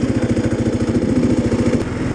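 Motorcycle engine running under way, a steady rapid pulse of firing strokes; its tone changes just before the end.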